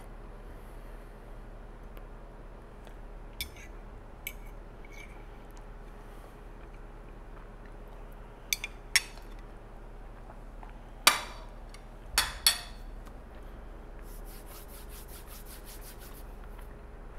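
Metal fork clinking against a plate: a scattered handful of sharp clinks, the loudest in the second half, over a steady faint room hum.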